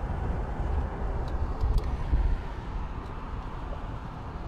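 Steady road and engine noise inside a car driving at motorway speed, mostly low in pitch.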